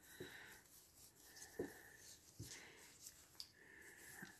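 Near silence: faint soft rustles and a few small ticks from fine tapestry wool being wrapped around fingers.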